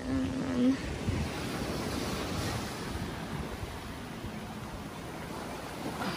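Steady wash of small waves breaking on a sandy beach, with some wind rumble on the microphone.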